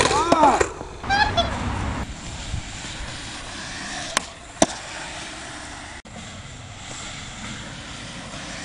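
A skater crying out after a hard fall on concrete: a rising-and-falling cry in the first second and a shorter one just after. Then skateboard wheels rolling on a hard court surface, with two sharp clacks of the board about four seconds in.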